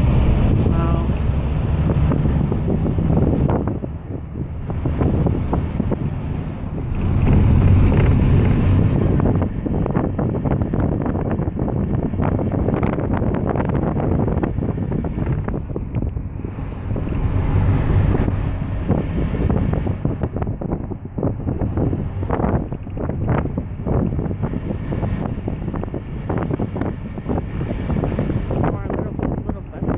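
Bus driving over a rough dirt road: a low engine and road rumble full of rattles and knocks, with wind buffeting the microphone at the open window. The rumble swells louder about eight seconds in and again near eighteen seconds.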